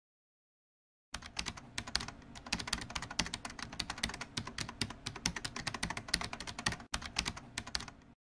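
Rapid typing on a computer keyboard: a dense run of key clicks that begins about a second in and stops suddenly at the end.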